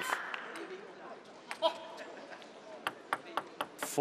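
Arena applause dying away, then a few sharp, irregular clicks of a plastic table tennis ball being bounced before a serve, one of them followed by a short ringing ping.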